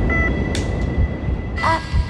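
A film clapperboard snapped shut once, a single sharp clap about half a second in, over a low steady rumble; a voice begins near the end.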